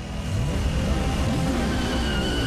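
Vehicle engine sound effects revving, the pitch rising and falling from about half a second in, over a music score.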